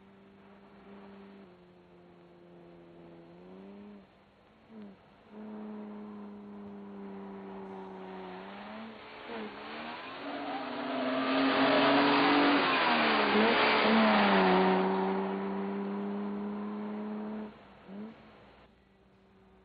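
A car engine running and revving, its pitch climbing and dropping several times as it accelerates and changes gear. A loud rush peaks about ten to fourteen seconds in, as of the car speeding past, and the sound cuts off sharply near the end.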